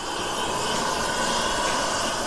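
Gas preheating burner running steadily into a thermite-weld mould at a rail joint, a continuous rushing hiss as it heats the rail ends before the weld is poured.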